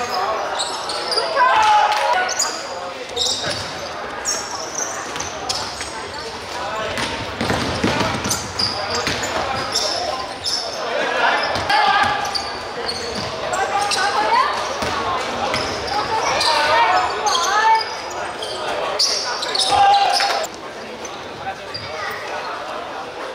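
Live indoor basketball game: a ball bouncing on a hardwood court amid indistinct shouts and calls from players and spectators, with the echo of a large sports hall.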